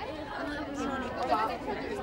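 People talking, several voices overlapping in conversation.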